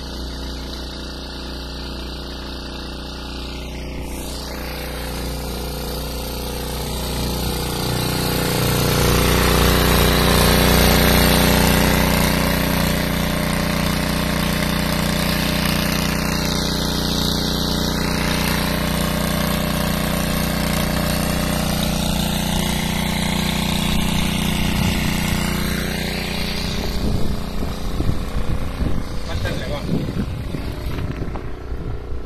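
Small petrol engine of a portable water pump running steadily while it pumps water through a hose to fill a trough. It gets louder about a third of the way in and holds there, with irregular knocking near the end.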